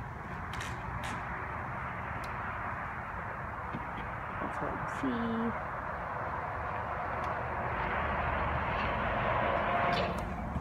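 Steady hiss of road traffic from a highway below, swelling gradually toward the end. A brief low call falling in pitch is heard about five seconds in.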